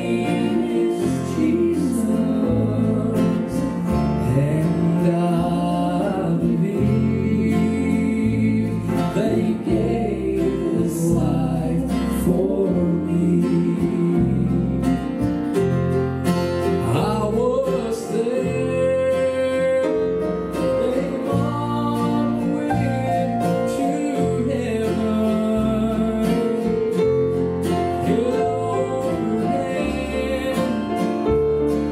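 Male vocalist singing a slow southern gospel song, accompanied by a strummed acoustic guitar over a steady bass part.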